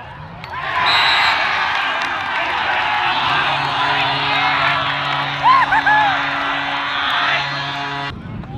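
Crowd cheering for a lacrosse goal, starting suddenly just under a second in, with shrill whoops at its loudest moment a little past halfway. A steady low tone comes in about three seconds in and holds until the sound cuts off sharply at the end.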